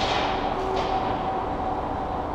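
Steady machine hum in a car workshop, with a burst of hiss at the start that falls away over about a second.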